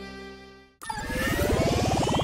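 A held musical chord fades out, then after a brief gap a transition sound effect begins about a second in: a rapidly pulsing tone that rises steadily in pitch.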